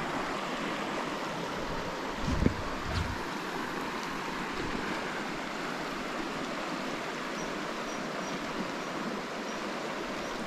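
Shallow river water rushing steadily over a stony riffle. A couple of brief low thumps come about two and a half seconds in.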